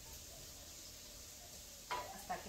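Faint, steady sizzle of diced potatoes frying in oil in a skillet.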